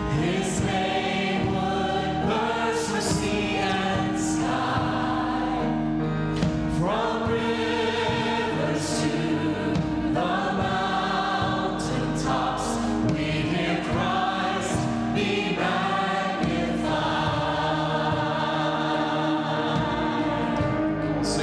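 A worship team and choir singing an upbeat gospel song together over piano and band accompaniment, with sharp cymbal-like strikes now and then.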